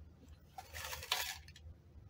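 A short rustling scrape of small plastic measuring cups being handled, lasting under a second about halfway through and ending in a sharp click.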